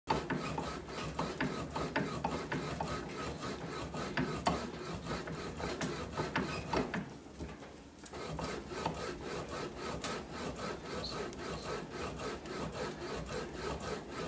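Hand-operated bat rolling machine pressing a Ghost Double Barrel fastpitch softball bat between its rollers to break in the barrel: a continuous rasping rub with many small clicks as the bat is worked through. The sound eases off briefly about seven seconds in, then picks up again.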